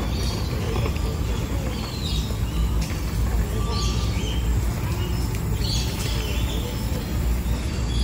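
Outdoor background of a steady low rumble, with faint, scattered bird chirps every second or so.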